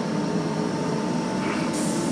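Class 319 electric multiple unit pulling away past the platform, a steady hum with a few held tones from its motors and running gear. A burst of hiss comes in near the end.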